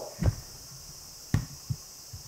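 A few soft, low thumps, one of them with a sharp click, over a faint steady hiss.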